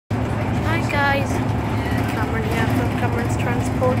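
Interior of a moving service bus: the engine and drivetrain give a steady low drone, with a voice talking over it.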